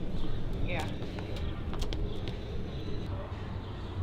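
Outdoor background murmur of people, with a man saying a single short "yeah" about a second in.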